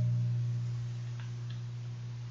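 The last low chord of a guitar-accompanied hymn ringing out and fading away steadily.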